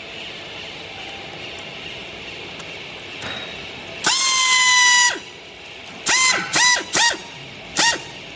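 Hand strapping tool working green plastic strap around a compressed clothes bale. After a few seconds of low steady background noise come loud, high-pitched squeals: one lasting about a second, then a quick run of three shorter ones and another near the end.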